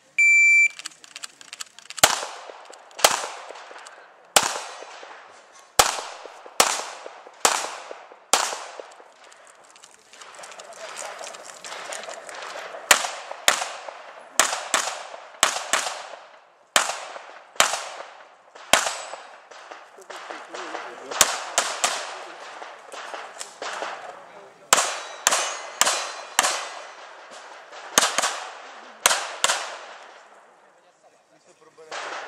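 An electronic shot timer's start beep, then a pistol fired in quick strings of shots, more than thirty in all, each with a short echo. There is a longer pause between strings about ten seconds in.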